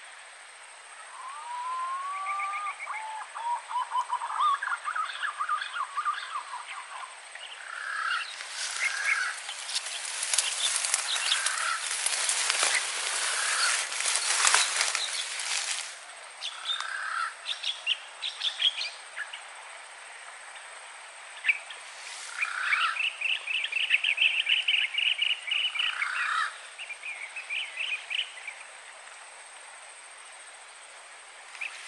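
Green pigeons (punai) calling in a tree: short phrases of whistled, warbling notes, the first ones rising in pitch. A stretch of rough, crackling noise fills the middle, and a run of fast high trills comes late.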